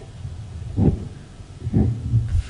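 Low steady rumble with two soft thumps, one a little under a second in and one near the end.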